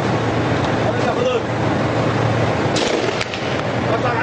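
Tank engine running with a steady low drone, with a few sharp metallic clicks near the end and men's voices over it.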